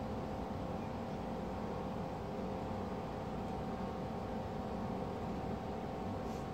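A steady mechanical hum with two constant tones over an even background noise, unchanging throughout.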